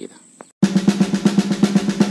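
Music added in editing: a drum roll of quick, even beats starts abruptly about half a second in.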